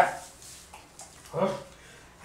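A man's short voiced exclamation, about a second and a half in, with a couple of faint clicks shortly before it.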